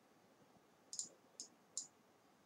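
Computer mouse clicks over near silence: a quick double click about a second in, then two single clicks about half a second apart.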